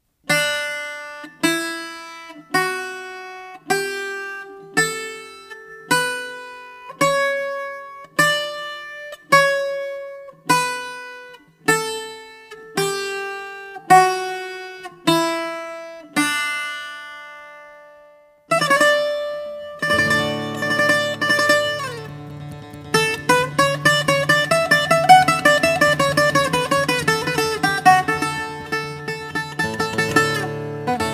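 Bouzouki playing the Matzore (major) mode note by note: single plucked notes about one a second, climbing the scale and coming back down, each left to ring out. After a short pause, about eighteen seconds in, a fast improvised taxim begins, with rapid picked runs over sustained low notes.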